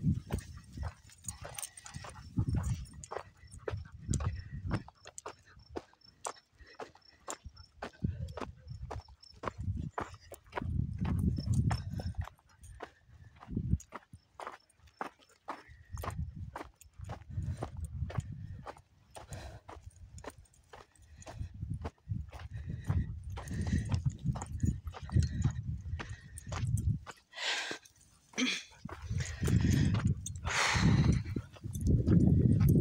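Footsteps crunching on a dry dirt and gravel trail at a steady walking pace, with patches of low rumble that come and go.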